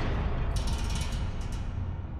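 Fireball sound effect: a burst of flame that has just gone off, fading into a low rumble, with a few crackles in the middle.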